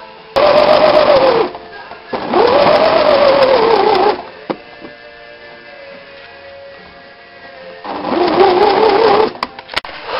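Electric sewing machine stitching a seam in three runs, its motor pitch rising and then dropping each time as the speed picks up and eases off. A few sharp clicks near the end.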